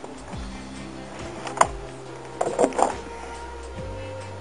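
A plastic compost barrel being turned by hand on its pole: one sharp knock about a second and a half in, then a few short creaks and squeaks, which the owner puts down to the barrel hanging up on the bar in the middle. Steady background music runs under it.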